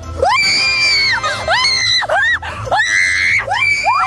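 Young women screaming in fright: four or five long, high-pitched screams one after another, with short yelps between them, over background music.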